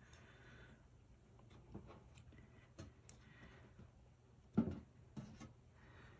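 Quiet handling sounds as a plastic petroleum jelly tub and cotton rounds are worked over a metal baking sheet: brief soft rustling, a few light taps, and one sharper thump about four and a half seconds in.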